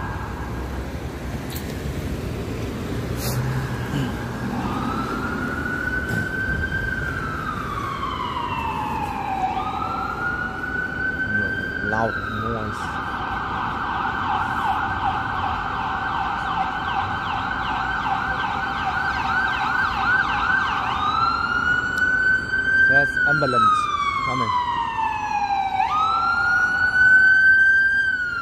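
Ambulance siren over city traffic noise. A slow rising-and-falling wail starts about five seconds in, switches to a fast warbling yelp for several seconds, then returns to the slow wail, growing louder near the end as the ambulance comes closer.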